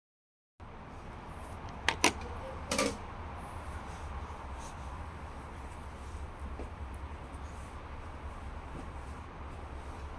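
A few sharp clicks of high heels on a tiled floor, two close together about two seconds in and a short cluster soon after, then only faint scattered ticks over a steady low hum.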